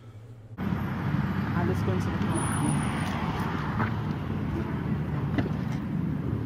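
Steady city street ambience with a low traffic rumble, starting abruptly about half a second in.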